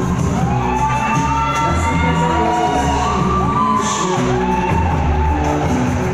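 Loud show music with a steady bass beat accompanying the act, with whoops and cheers from the audience rising and falling over it.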